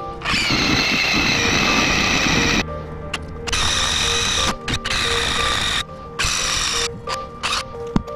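Milwaukee M18 cordless driver running in bursts as it drives screws into a solar panel frame. There is one long run of about two seconds, then three shorter runs and a brief blip near the end.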